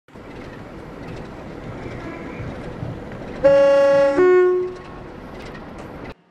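A train's two-tone horn sounds about three and a half seconds in, a lower note then a shorter higher one, over the steady rumble of a running train.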